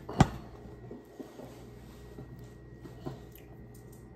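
Quiet room with one sharp click just after the start, then a few faint ticks from fingers handling a small charm.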